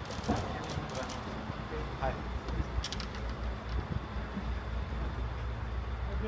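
A few short spoken words among people walking, over a steady low rumble, with scattered light clicks and taps.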